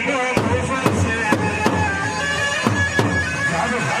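Chobi dance music: a shrill, reedy wind melody over heavy strikes of a large double-headed bass drum beaten with a stick, about two strikes a second.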